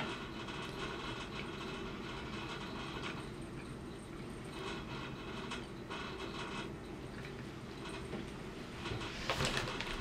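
Faint steady room tone, a low hum and hiss, with a brief rustle of movement near the end.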